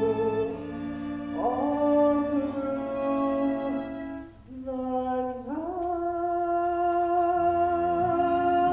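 Musical-theatre song: a singer over orchestral accompaniment, with a phrase rising about a second and a half in, a short break, then a rising note held long with vibrato.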